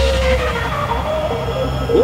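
Happy hardcore dance music at a sparse breakdown: a steady deep bass drone, with a long held note sliding slowly down that fades out about half a second in.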